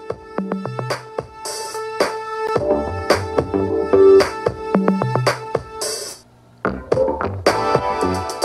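A song with a steady beat played through an EKSA E3000 gaming headset's ear cup and picked up by a camera microphone pressed into the earpiece. The music drops away briefly about six seconds in, then resumes.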